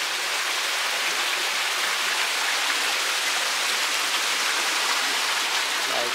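Water running and splashing steadily down an artificial rock garden into a koi pond, an even rushing sound with no breaks.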